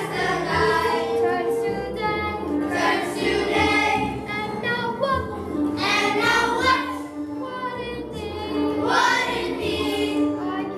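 Children singing a song over a recorded musical accompaniment, with a girl's voice leading the sung phrases.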